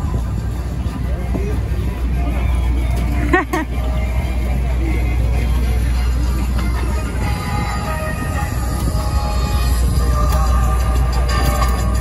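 Busy city street ambience: a steady low traffic rumble under a crowd's mingled voices, with music in the mix. A brief high chirp sounds about three and a half seconds in.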